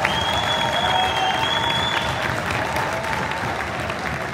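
Audience applauding in a large hall, with a high, steady held tone over the clapping for about the first two seconds.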